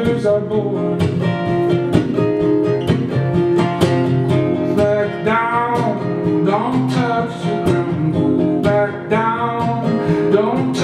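Solo acoustic guitar strummed in a steady rhythm, with a man's voice singing over it at times, in sliding notes around the middle and near the end.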